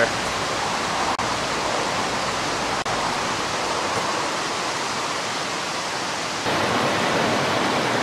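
A stream's water rushing steadily, growing a little louder about six and a half seconds in.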